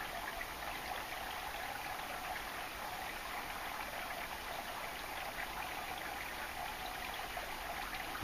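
Steady, even background hiss with no distinct events, like running water.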